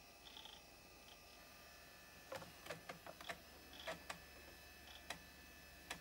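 Faint, irregular clicks over a low steady hum from the laptop's disk drives, seeking and reading as Windows setup loads and begins copying files.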